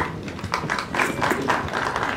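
Audience clapping: a spatter of many quick, uneven claps at moderate loudness, welcoming a guest just announced.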